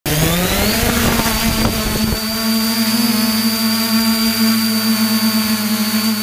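Multirotor camera drone's motors and propellers spinning up for takeoff, a rising whine that settles into a steady high hum. Rough rustling and buffeting, the propeller wash in the long grass, for about the first two seconds as it lifts off.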